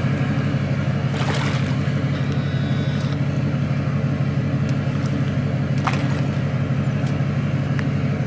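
An engine idling steadily, a low even hum, while a small jet boat is floated off its trailer in shallow water. A short splash or knock comes about a second in, and a sharp click near the six-second mark.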